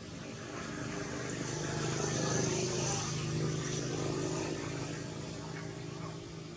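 A passing engine hum that grows louder toward the middle and then fades away.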